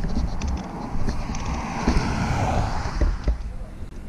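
A car passing on a mountain highway: tyre and engine noise that swells and fades in the middle, over a low wind rumble on the microphone.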